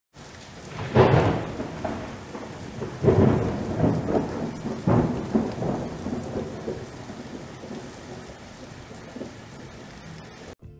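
Thunderstorm sound effect: three heavy rumbles of thunder about two seconds apart over a steady hiss of rain, the first rumble the loudest, then a slow fade.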